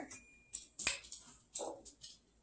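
Faint handling sounds of a glass vinegar bottle being opened: one sharp click a little under a second in as the cap comes off, with a few soft knocks around it.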